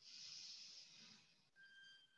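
Near silence: a faint breath-like hiss at the microphone, fading over the first second and a half, then a faint thin whistle-like tone near the end.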